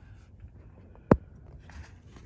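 A single sharp knock about a second in, with faint rustling around it.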